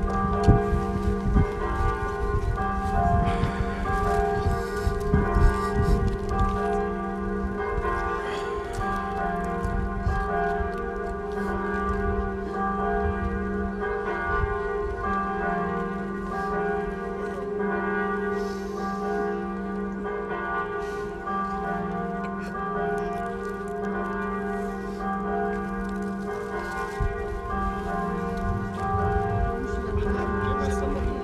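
Bells ringing continuously, overlapping tolls that hang on and keep sounding as new strokes come in. A low rumble underlies the first few seconds.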